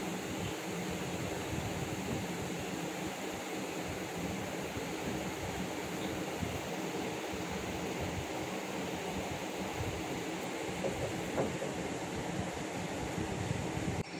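Steady background room noise: a continuous, even hiss with no speech.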